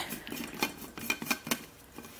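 Lid of a Frank Green reusable cup being twisted off by hand, its threads and the steel tea-strainer rim giving a run of small clicks and light scrapes.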